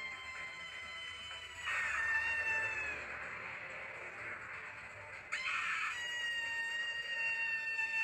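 Soundtrack of the anime episode playing on screen: several steady high ringing tones held throughout, with a sudden whoosh about two seconds in and another about five seconds in.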